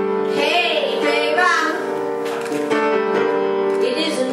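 Upright piano playing held chords under a woman singing a melody with vibrato. Her voice pauses in the middle and comes back near the end.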